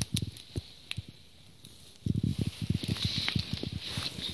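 Goats nosing at the camera: a few soft bumps and clicks, a quieter stretch, then from about halfway through a quick run of soft bumps and rubbing right on the microphone.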